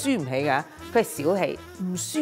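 A woman talking, over low background music.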